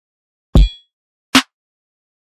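Two drum one-shot samples played back in turn: a kick with a deep low end and a bright ringing click about half a second in, then a short, dry snare hit just under a second later.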